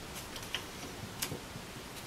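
A handful of light, sharp clicks and ticks as a strip of sandpaper is handled and slipped between an acoustic guitar's neck heel and its body.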